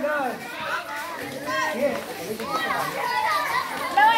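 Many children talking and calling out over one another, several high voices at once.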